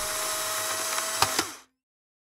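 Instant camera's motor whirring as it ejects a print, steady for about a second and a half, with two clicks near the end before it cuts off.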